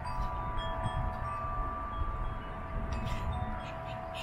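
Chimes ringing: several steady tones that hold and overlap, over a low steady rumble.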